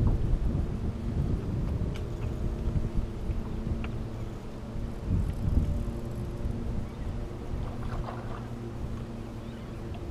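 Wind rumbling on the microphone, loudest at the start and easing off, over a steady low hum from the fishing boat's motor.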